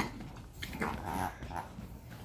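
Two small dogs play-fighting, making several short, irregular dog noises in quick succession.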